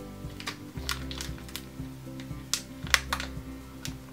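Background music with the irregular crinkling and clicking of a small clear plastic sample bag being handled in the hands, with a couple of sharper crackles about two and a half and three seconds in.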